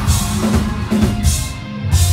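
Melodic hardcore band playing live and loud, drum kit and bass guitar to the fore in a steady drum pattern. Near the end it pulls back for a moment before the next section comes in heavily.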